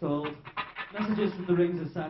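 A man's voice through the stage microphone and PA, in two short vocal phrases with no instruments playing.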